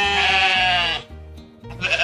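Sheep bleating twice: one long bleat ending about a second in, then a quavering bleat near the end, over children's background music.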